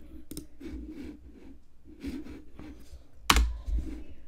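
Scattered light clicks and taps from a computer keyboard and mouse, with one louder knock about three seconds in.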